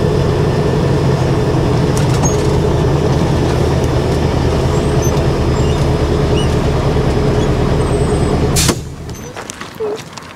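MAN KAT1 truck's diesel engine running steadily at low speed, heard from inside the cab. Near the end a short burst of noise and the engine sound cuts off sharply.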